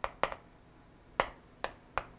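Chalk clicking and tapping against a chalkboard while a phrase is written: about five sharp, separate clicks at irregular intervals.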